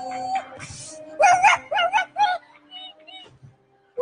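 A performer's voice giving four short loud cries in quick succession, each bending up and down in pitch, followed by a few faint high squeaks.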